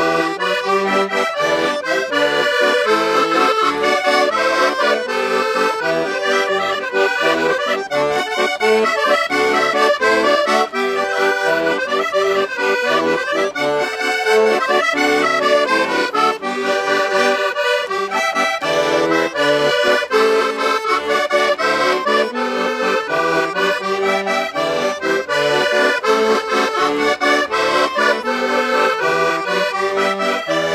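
Two button accordions playing a traditional Portuguese folk tune together: a diatonic button accordion (Portuguese concertina) and a chromatic button accordion, with quick runs of short notes throughout.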